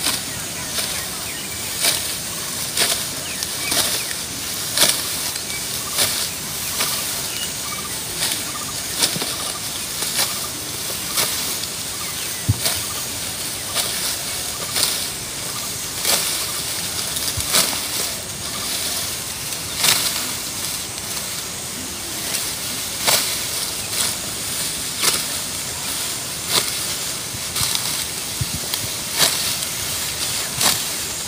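Dry rice stalks rustling and crunching as they are harvested by hand, in irregular crisp strokes about once or twice a second over a steady hiss.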